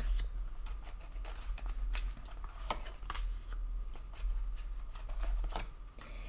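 A tarot deck being shuffled and handled: a run of irregular light card snaps and rustles.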